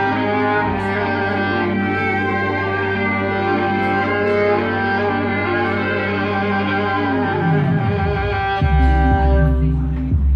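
Violin playing long sustained notes over a steady low backing. About three quarters of the way through, a low note slides downward as the piece draws to its close.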